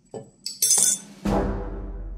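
A metal spoon clinking a few times against a ceramic bowl in the first second, then music with a heavy bass starting about a second and a quarter in and taking over as the loudest sound.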